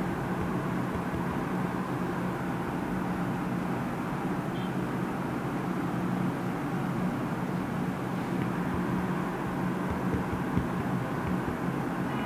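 Steady room background noise: an even hiss with a low electrical hum underneath, and no distinct events.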